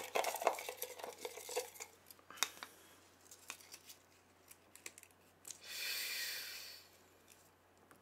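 A small folded paper slip being handled and unfolded: scattered light clicks at first, then a crinkling paper rustle lasting about a second, some six seconds in.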